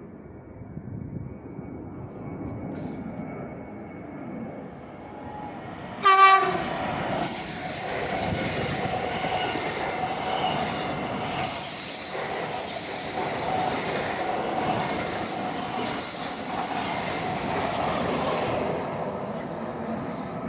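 Two coupled Z 20500 double-deck electric multiple units approaching and passing through the station. A short horn blast about six seconds in is the loudest sound. It is followed by steady wheel and rail noise with a high hiss as the carriages go by.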